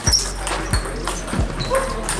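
Table tennis rally: the celluloid ball knocking between bats and table about every two-thirds of a second, with short high squeaks in a busy sports hall.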